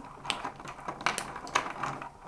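Hard plastic links of a link-style dog training collar clicking against one another as the collar is handled and opened close to the microphone: a string of small, sharp, irregular clicks.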